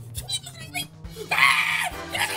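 Background music with a steady beat, and, a little over a second in, a person's loud, shrill scream lasting about half a second.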